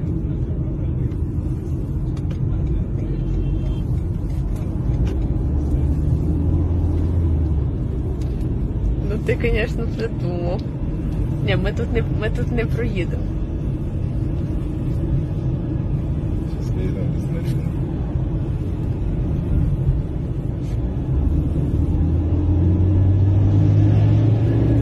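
Steady low road and engine rumble heard from inside a moving car's cabin, with a deeper engine drone swelling about five seconds in and again near the end.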